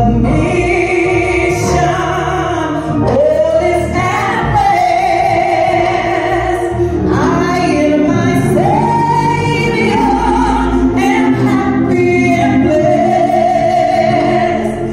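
A woman singing a slow gospel solo into a microphone, holding long notes and sliding between pitches, over steady instrumental backing.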